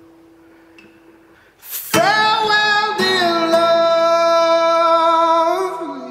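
Folk-blues song: a quiet held tone fades, then about two seconds in a singer comes in loudly on one long held note, which slides down near the end.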